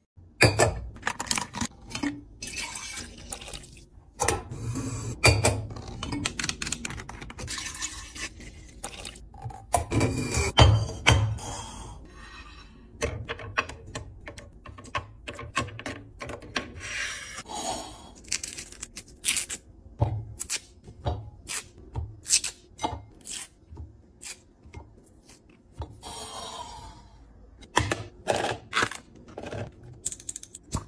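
A busy string of sharp clicks, taps and knocks from kitchen items being handled and set down on hard surfaces, including eggs set one by one into a ceramic egg tray. A short hiss comes near the end.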